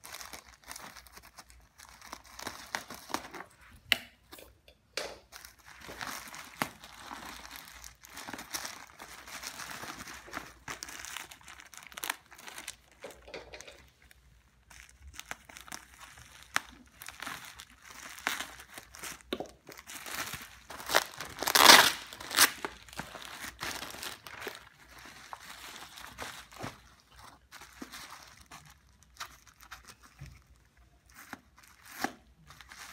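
Plastic courier mailer pouch being handled and opened by hand: irregular crinkling of the thin plastic in short bursts, with a louder burst of about a second roughly two-thirds of the way in.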